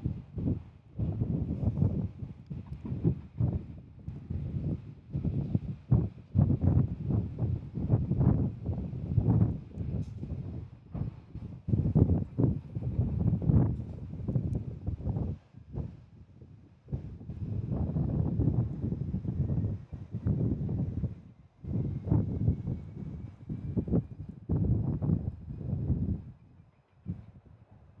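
Gusty wind buffeting the microphone, a low rumbling noise that surges and drops in irregular gusts with brief lulls.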